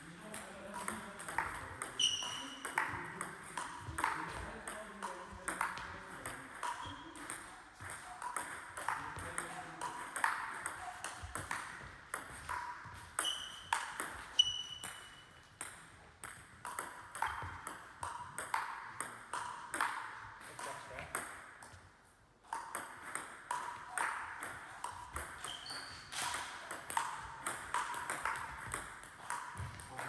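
Table tennis rally: the ball clicking sharply and irregularly off the rackets and the table, several hits a second, with a brief pause about two thirds of the way through.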